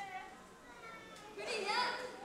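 The last held note of an a cappella kapa haka song fades out, and after about a second of near quiet a single voice calls out near the end.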